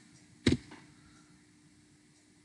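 A single sharp keystroke on a computer keyboard about half a second in, followed by a fainter click, as the address is entered; otherwise quiet room tone.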